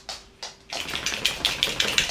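A large dog's claws clicking on a laminate floor as it walks, a few spaced clicks at first, then from under a second in a faster, denser run of clicks with breathy panting.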